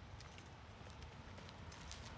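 Faint footsteps with a light jingle of keys carried by a walking person: a quick scatter of small high clicks.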